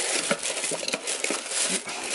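Thin plastic shopping bag rustling and crinkling as a small cardboard box is handled inside it, with short papery crackles throughout.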